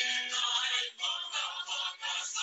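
A recorded song playing: a singing voice over musical accompaniment, heard through a video call's band-limited audio.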